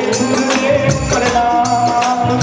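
Live Hindi devotional bhajan: a singer's voice over band accompaniment, with jingling percussion keeping a steady beat of about two to three strokes a second.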